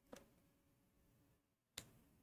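Near silence: faint room tone broken by two short clicks, one just after the start and one about a second and a half later.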